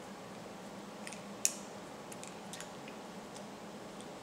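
Faint clicks and light taps of a camera stand's ball-head mount and screw being handled and jiggled, with one sharper click about a second and a half in.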